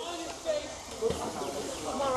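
Speech only: faint voices of people talking.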